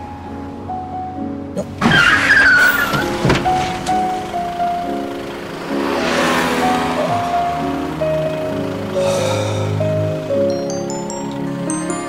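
Soft background music of held notes plays throughout, with a rising run of high chime notes near the end. About two seconds in, a car's tyres squeal briefly as it brakes hard, and a rush of car noise swells around six seconds.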